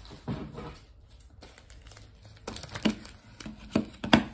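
Packaging crinkling and rustling as things are rummaged through and picked up, with several sharper clicks and knocks in the second half.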